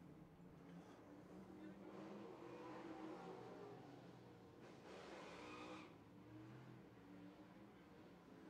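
Faint outlaw figure-eight race car engines, several at once, their pitch rising and falling as the cars accelerate and slow.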